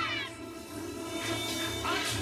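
Anime soundtrack: background music with a short, high, wavering cry-like sound effect near the end.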